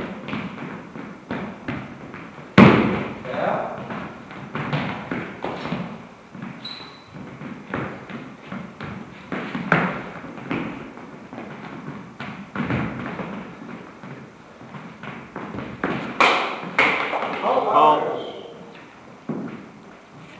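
Fencers' footsteps and stamps on a hard hall floor with knocks of steel training swords meeting, in scattered irregular hits; the loudest sharp impact comes about two and a half seconds in, another cluster near the end, and one short high ring of metal.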